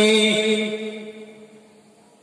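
A man's chanting voice through a public-address system holding one long note that fades away about a second and a half in.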